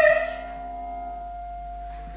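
A soprano's loud held operatic note ends in about the first half-second. A soft, steady accompanying chord rings on after it.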